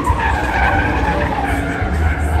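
Dodge Charger drifting: tires squealing with a wavering pitch over the engine's low running.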